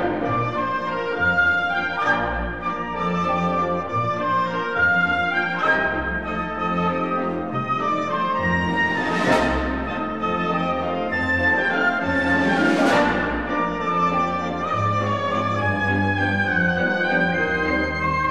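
Full orchestra playing a light ballet waltz, with brass to the fore. Bright accents flare up about every three to four seconds over a steadily moving bass line.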